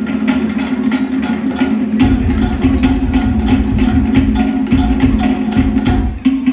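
Live Polynesian dance music: rapid, even drumming with sharp wood-block-like strokes over a steady held low note, joined by deeper drum beats about two seconds in.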